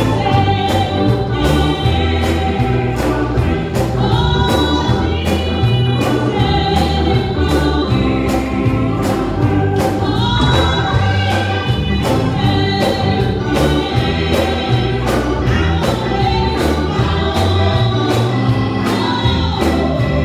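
Live gospel music: a small choir singing with instrumental backing, a steady beat and heavy bass under the voices.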